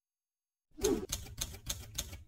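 Typewriter keystroke sound effect from a logo intro: a quick run of sharp clacks over a low rumble, beginning about two-thirds of a second in and closing with a short tone.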